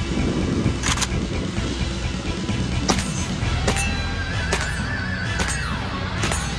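Background music with a steady bass line and sharp percussive hits roughly once a second, plus a held synth tone that slides down in pitch near the end.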